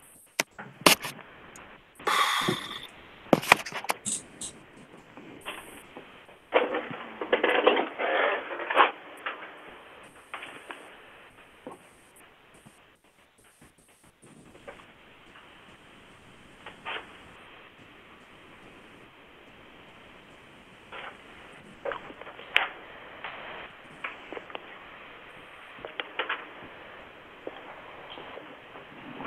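Handling noise on a video-call microphone: scattered clicks, knocks and rustles, busiest about two seconds in and again around seven to nine seconds, with a quieter spell in the middle.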